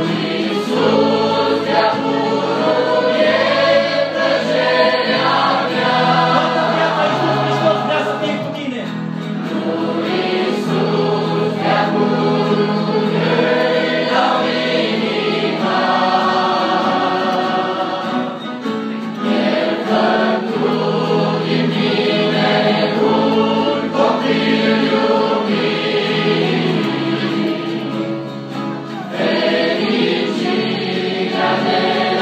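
A large mixed youth choir singing a Christian worship song in Romanian, with sustained low instrumental notes underneath.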